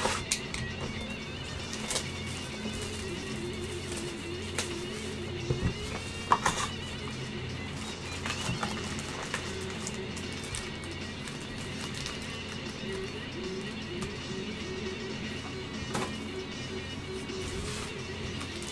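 Background music playing under scattered clicks and crackles of a trading-card box being torn open and its foil packs handled, with a sharper knock about six seconds in.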